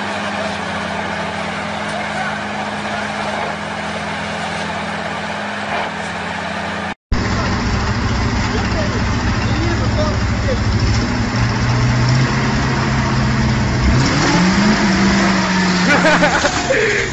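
A steady drone with a low hum, then after a brief cutout about seven seconds in, a louder fire truck engine running and revving up with a rising pitch near the end.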